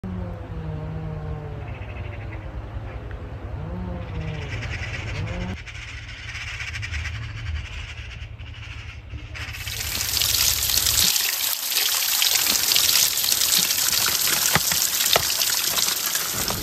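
Water of a small mountain stream pouring and splashing over rocks, a loud steady rush that sets in about two-thirds of the way through. Before it there is a quieter stretch with a low steady rumble and a few gliding calls.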